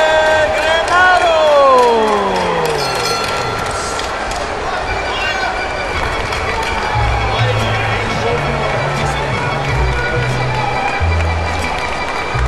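A ring announcer's drawn-out call of a boxer's name, held on one long note and then sliding down in pitch over a couple of seconds. It is followed by background music with a deep stepping bass line.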